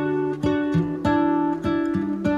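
Background music: an acoustic guitar picking a gently moving chord pattern with a steady pulse, a new note about every half second.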